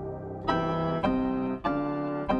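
Sampled grand piano (Skybox Audio Hammers + Waves 'Obscure Grand') playing a D-minor melody loop at 96 BPM. A soft sustained tail gives way, about half a second in, to chords struck roughly once a beat.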